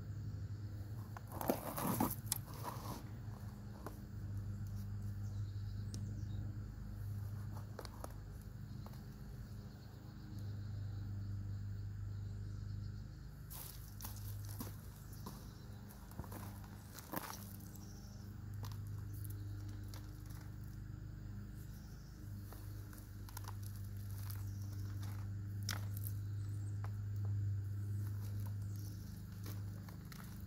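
Hands digging through loose potting soil in a container and handling harvested sweet potatoes: soil crunching and rustling with scattered sharper clicks, the loudest cluster about two seconds in. A steady low hum runs underneath throughout.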